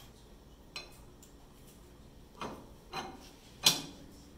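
Four light metal clicks and clinks as steel dado chippers are slid onto the table saw's arbor and settle against the stack, the loudest near the end.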